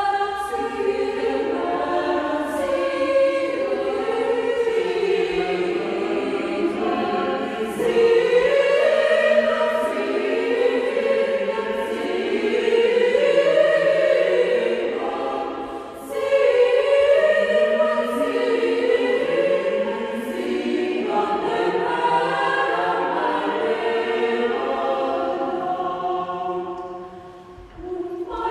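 Mixed choir of men's and women's voices singing in several parts, held notes moving in phrases, with a brief breath between phrases about two-thirds of the way through.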